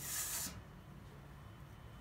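A woman's voice trailing off in a short hiss, the drawn-out 's' of a counted word, then quiet room tone.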